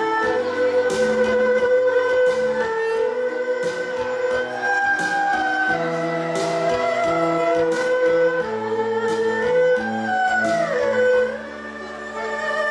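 An erhu ensemble plays a melody together, in long bowed notes with sliding pitch. Low bass notes and a regular beat run underneath. The sound dips briefly near the end, then the strings return with a sliding phrase.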